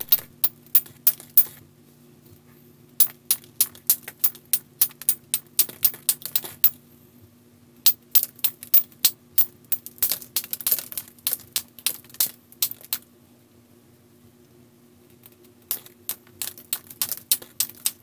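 Quick, light strikes of a copper-tipped knapping tool on the edge of a Keokuk chert spall, sharp clinking clicks in runs of about four or five a second with short pauses between runs, knocking off weak areas of the stone. A faint steady hum lies under it.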